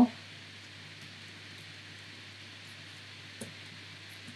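Low steady background hiss and faint hum of a room and microphone between narration, with one faint click about three and a half seconds in.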